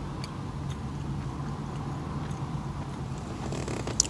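Quiet chewing of a dry, crumbly protein bar: a few soft crunches over a steady low hum.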